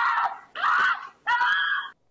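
A woman screaming in terror three times in quick succession as she is grabbed by an attacker, recorded by a home security camera's microphone.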